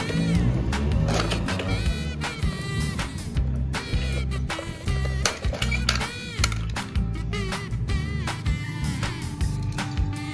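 Background music with a steady, repeating bass beat and a gliding melody line.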